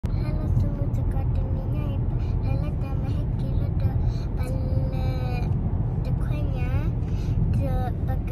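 Steady low rumble of road and engine noise inside a moving car's cabin, with a child's voice talking over it.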